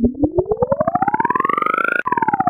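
Synthetic siren-like electronic tone from an edited logo animation, gliding steadily upward in pitch throughout, chopped into rapid even pulses.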